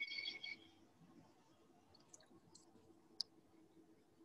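Near silence on a video-call audio line, broken by a brief high-pitched tone in the first half-second and a single faint click about three seconds in.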